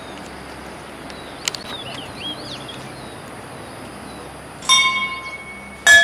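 Steady outdoor background hiss with a few short bird chirps, then about five seconds in a bell-like chime strikes and rings away, followed just before the end by a second, louder chime.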